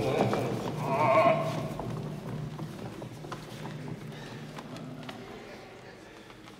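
Footsteps and shuffling of several performers on a wooden stage floor, with a brief voice about a second in. The sound fades steadily toward the end.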